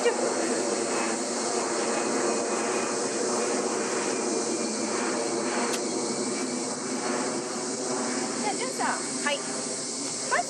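A single sharp strike about six seconds in as a 7-iron swing makes contact, over a steady background drone with a high hiss.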